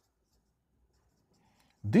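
Faint scratching of a marker pen writing a word on a whiteboard.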